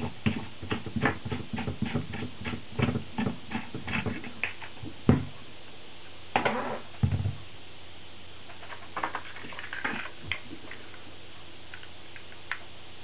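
Handling noise from a Wonder Wand Widebander antenna tuner box being unscrewed from the rear antenna socket of a Yaesu FT-817: a quick run of small clicks and knocks, about three a second. A louder knock about five seconds in, then a short scrape as the radio is moved across the desk, and a few faint clicks near the end.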